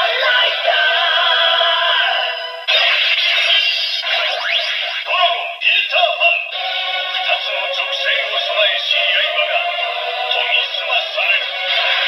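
Electronic transformation song with sung vocals playing from a Kamen Rider Saber DX transformation belt toy's small built-in speaker: thin and tinny, with no bass. It dips briefly about three seconds in and breaks off for about a second near the middle before carrying on.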